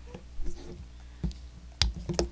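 A few short sharp clicks and light knocks, about three, spread across two seconds, with a faint murmur of voice.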